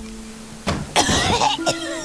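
A cartoon girl coughing a few times, starting about two-thirds of a second in, as if choking on smoke. Soft background music holds a couple of notes at the start.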